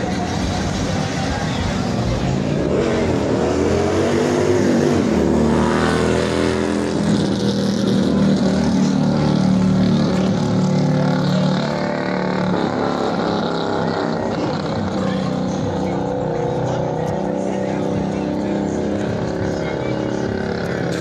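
Car engine revving: its pitch climbs and falls a few seconds in, is then held up for several seconds, and eases back down about twelve seconds in.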